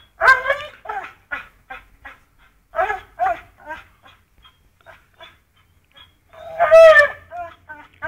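Pit bull making short, high, nasal whines and grunts in a quick series while it hangs from a springpole rope by its jaws and bounces. The loudest cries come just after the start and again near the end.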